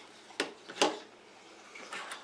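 Two short knocks, about half a second apart, as a small handheld radio is set down on a wooden table.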